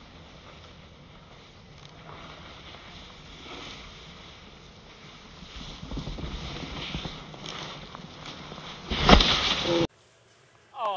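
Snowboard sliding and scraping over snow, with wind on the microphone, growing louder as the rider passes close. A loud burst of noise about nine seconds in, then the sound cuts off suddenly.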